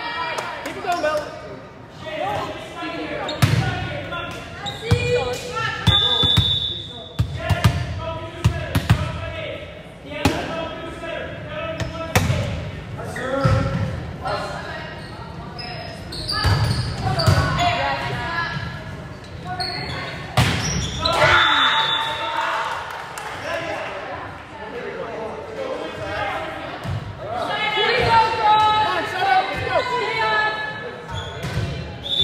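Volleyball rally in a gym: repeated sharp hits of the ball being struck and hitting the hardwood floor, under continual shouting and chatter from players and spectators, echoing in a large hall. A short high-pitched tone sounds about six seconds in and again about twenty-one seconds in.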